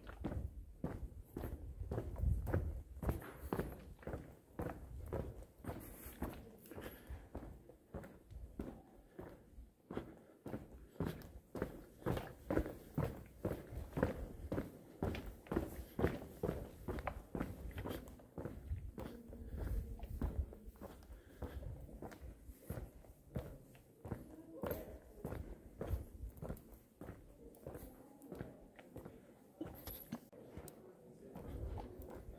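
Footsteps of a person walking at a steady pace, about two steps a second.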